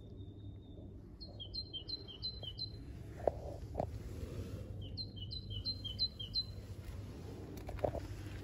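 A songbird singing two short songs, each a run of five quick repeated two-note phrases, a higher note then a lower one, a few seconds apart. A couple of faint knocks fall between the songs.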